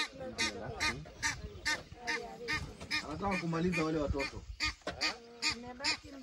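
Wild ducks calling in a steady, rapid run of quacks, two to three a second, the flock sounding off as a lioness stalks it.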